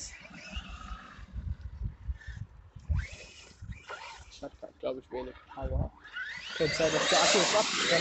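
Electric RC monster truck driven into a deep muddy puddle near the end: a loud rising motor whine and water splashing as it hits the water.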